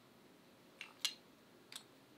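Three faint, short clicks of a speed stitcher sewing awl and webbing strap being handled as its thread is pulled through.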